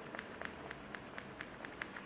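Felt-tip marker writing on a whiteboard: a quick run of short, faint squeaks and taps.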